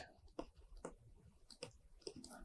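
Near silence with about three faint, short clicks of a stylus tapping and writing on a tablet screen.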